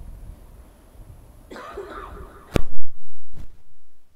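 Handheld microphone being passed from hand to hand: low rumbling handling noise, then a person coughing into it about halfway through, followed by a sharp knock and several loud thumps on the microphone.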